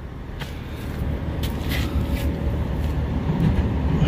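A steady low mechanical hum, with a few faint clicks over it.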